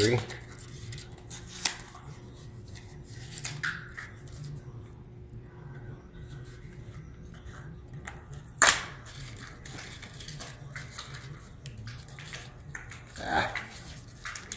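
Small laptop parts and packaging being handled by hand: scattered light clicks and rustles, with one sharp click a little past halfway, over a faint steady low hum.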